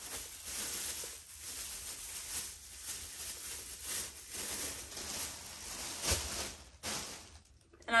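A thin plastic bag crinkling and rustling as shoes are packed into it and the bag is handled and knotted shut. The crackling stops about seven seconds in.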